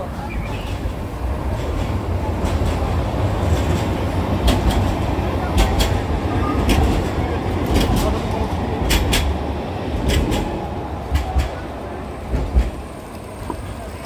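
A street tram running past close by on its rails: a steady low rumble that swells through the middle, with a run of sharp clicks, and eases off near the end.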